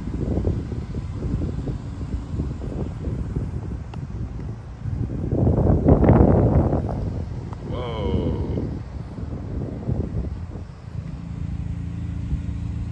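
Indistinct background voices over wind buffeting the microphone, with a louder stretch of talk about halfway through. Near the end a steady low hum sets in.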